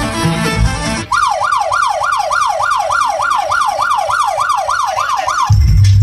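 Dance music over a PA cuts off about a second in and gives way to a siren sound effect, a wail sweeping up and down about three times a second. Near the end a heavy bass beat comes in.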